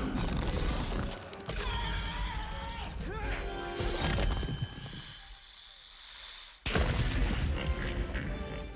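Film soundtrack of dramatic orchestral music mixed with monster sound effects and crashing rock. A hiss builds near the middle, then a sudden loud roar and crash come about two-thirds of the way in.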